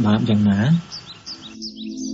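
Rapid bird chirps, each call a short falling note, start after a man's voice stops. About halfway through they are joined by a steady, sustained ambient music drone.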